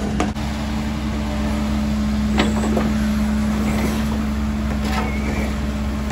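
Caterpillar 308 mini excavator running under load: a steady diesel drone with a hydraulic hum, broken by a knock about two and a half seconds in and another near five seconds.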